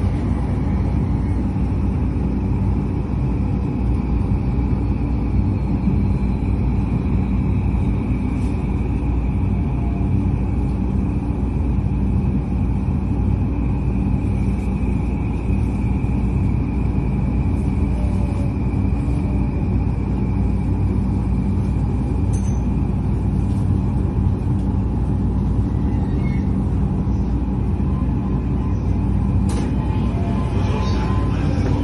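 Interior running noise of a JR Yamanote Line commuter train: a steady rumble of wheels on rails with a high, steady whine that fades out about three-quarters of the way through as the train runs into a station. A few faint clicks come near the end.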